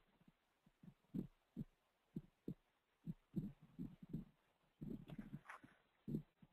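Faint, irregular soft low thumps, about a dozen, bunching together near the end, on an otherwise near-silent track.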